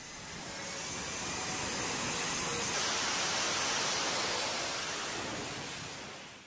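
Fighter jet's engines on an aircraft carrier flight deck during a launch: a broad, steady rushing roar that swells to its loudest about three to four seconds in and then fades.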